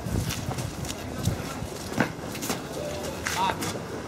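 Boots of a group of recruits walking on hard ground: irregular footsteps, with voices in the background.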